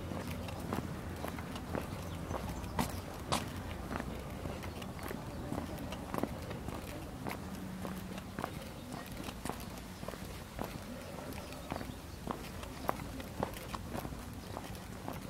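Footsteps on a brick-paved street, short hard clicks at a walking pace of about two steps a second, over a low steady hum.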